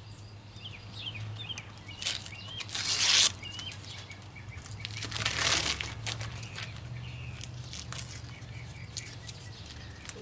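A paper covering being peeled and torn off a flexible stone veneer sample, crackling, with two louder rips about three and five and a half seconds in. Birds chirp in the background.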